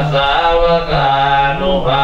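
Buddhist monks chanting Pali blessing verses in unison into microphones, in a steady, nearly level monotone with short breaks between phrases.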